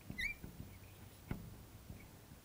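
Fluorescent marker squeaking briefly on a glass lightboard as a formula is written, followed by a faint tap about a second later.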